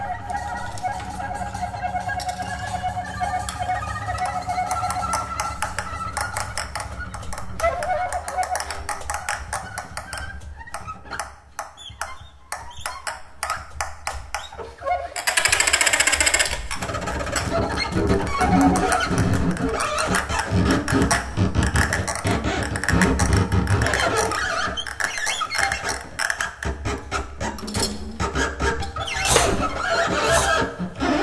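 Free-improvised jazz from soprano saxophone, double bass and drums with percussion. A wavering pitched line runs over scattered percussive clicks and knocks for the first several seconds, then the playing thins out. About fifteen seconds in comes a loud hissing crash, followed by dense, busy clattering percussion.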